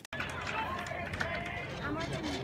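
Outdoor ambience: wind on the microphone with faint distant voices, after an abrupt cut.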